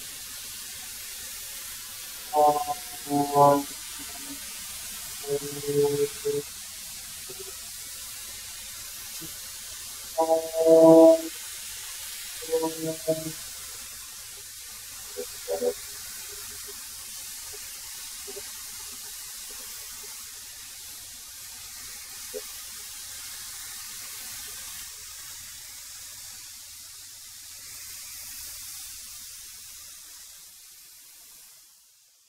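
13-inch benchtop thickness planer running and cutting, an even hiss of motor and cutterhead as boards go through on a light pass of about a hundredth of an inch. Short bursts of musical notes sound over it several times in the first half.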